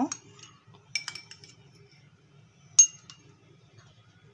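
A metal spoon clinking against cut-glass dessert cups as crushed biscuit is spooned in: a few light taps about a second in, then one sharp, ringing clink near the end.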